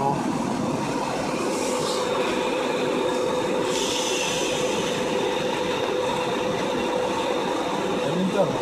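Steady road and running noise heard from inside a moving vehicle's cabin, with a faint steady hum. A brief hiss comes twice, about two and four seconds in.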